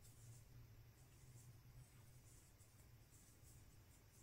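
Near silence: faint, scratchy rustling of a metal crochet hook drawing cotton yarn through stitches, over a low steady hum.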